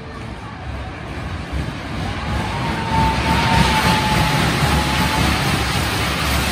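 Haunted-house ride car running along its track, a steady noise that grows louder, with a thin whine for a few seconds in the middle.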